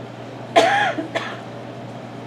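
A man gives one short cough, clearing his throat close to a handheld microphone, followed by a small click.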